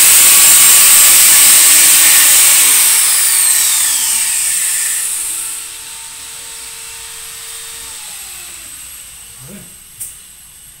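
Handheld angle grinder running at high speed with a high whine, cutting a piece of PVC cornice trim. Its pitch falls and it winds down about five and a half seconds in, leaving a quieter hum that fades away.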